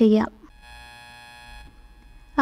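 A faint steady buzz, lasting about a second, that starts and stops abruptly.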